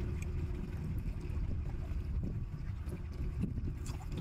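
Wind buffeting the microphone as a steady low rumble, with a few faint wet clicks of a man chewing seafood.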